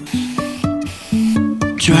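Aerosol spray adhesive hissing from a can in short stop-start bursts, under background music with plucked acoustic guitar.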